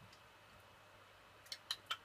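Quiet room, then three or four short sharp clicks in quick succession near the end.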